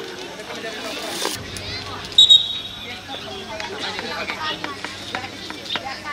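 Spectators talking along the touchline at a football match, with one short, high referee's whistle blast about two seconds in as the ball goes out for a throw-in.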